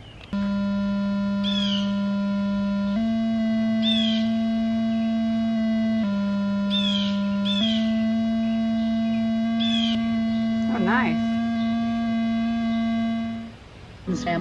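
A steady buzzy electronic tone from the old TV's speaker, the converter box's signal-meter tone, jumping back and forth between two close pitches as the antenna is aimed, and cutting off near the end. Birds chirp over it every couple of seconds.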